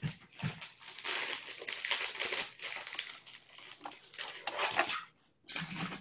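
Packaging being handled, rustling and crinkling in irregular bursts, with a short pause near the end.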